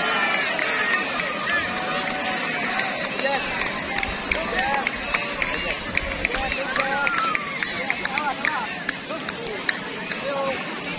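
A large crowd of spectators talking and shouting, many voices overlapping into a continuous babble.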